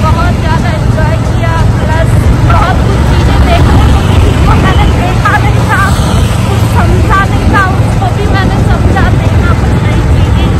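Wind rushing over the microphone and the road rumble of a moving two-wheeler, a steady low roar throughout, with snatches of a woman's voice half buried under it.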